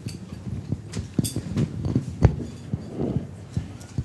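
A scatter of small knocks and clinks, with one louder, deeper thump a little after halfway: handling and table noise while a microphone is passed round.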